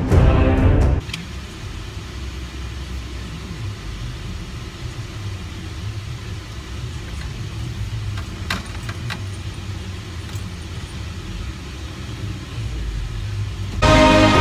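Steady low engine and road rumble inside a small car's cabin as it drives, with two brief clicks about half a second apart near the middle.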